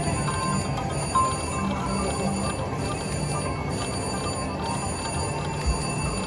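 Video slot machine spinning its reels, with electronic spin chimes and ticking over the steady din of other machines on a casino floor. A short beep comes about a second in, and a low thump near the end.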